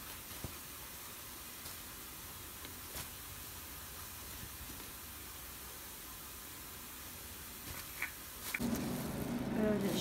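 Quiet room tone: a steady faint hiss with a few small soft clicks. Near the end a louder low hum comes in.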